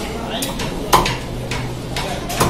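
Small knife cutting and scraping a piece of seer fish on a wooden chopping board, with two sharp clicks of the blade, the louder one about a second in.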